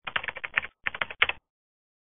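Keyboard typing sound effect: a quick run of key clicks with a brief pause in the middle, stopping about a second and a half in.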